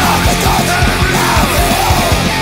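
Punk/heavy metal rock song played by a full band: fast, driving drums under distorted electric guitars, with a shouted vocal line over them.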